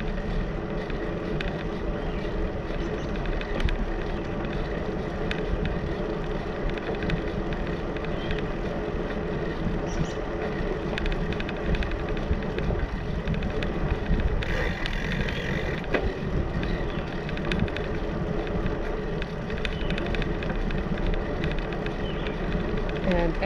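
Steady rumble of riding a bicycle with the camera mounted on it: wind on the microphone and tyres rolling over a concrete deck, with scattered small clicks and rattles. A brief hiss comes about two-thirds of the way through.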